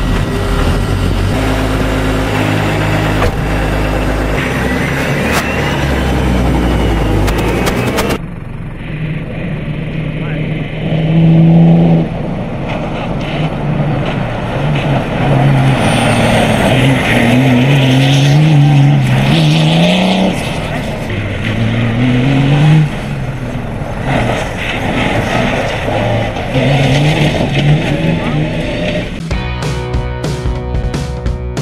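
Rally-raid prototype's engine running just after being started, then, after a cut, the car accelerating hard on gravel: engine pitch rising repeatedly and dropping at each gear change. Music comes in near the end.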